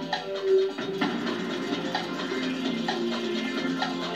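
Quiz-show 30-second countdown clock music playing: a melody over a steady tick about once a second, heard from a television's speaker.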